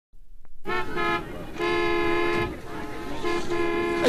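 Car horns honking as a traffic sound effect: three long blasts, the middle one the longest, with faint street noise between them.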